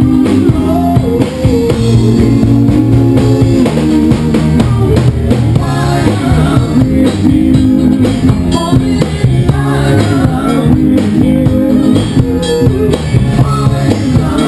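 Power-pop band playing live at full volume: electric guitars, electric bass and a drum kit, with a sung lead vocal over them.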